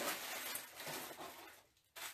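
Faint rustling of a paper receipt being handled, fading away and cutting to a brief silence near the end.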